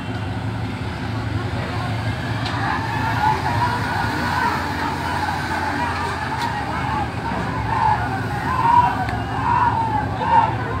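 A steady low engine drone, with distant voices calling out over it.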